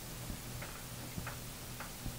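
Pause in a recorded talk: steady low hum and hiss of the recording, with a few faint, irregular ticks.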